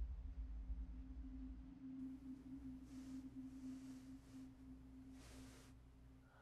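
Soft, steady low humming tone of a film-score drone, held throughout. A deep rumble under it dies away in the first two seconds, and faint breathy hisses come about three seconds and five and a half seconds in.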